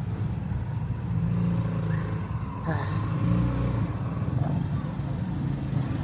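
Street traffic: a motor vehicle engine running close by with a steady low rumble, and a brief sharper sound about halfway through.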